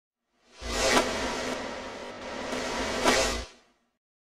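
Logo intro sound effect: a noisy whoosh with a low drone under it, swelling in about half a second in. It peaks near one second and again near three seconds, then fades out just after three and a half seconds.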